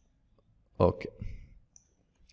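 A single sharp click about a second in, over a short spoken 'okay'.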